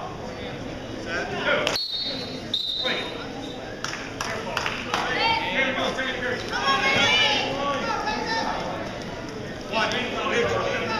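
Indistinct shouting from coaches and spectators echoing in a gymnasium during a wrestling match, loudest in the middle seconds, with a single sharp knock just under two seconds in.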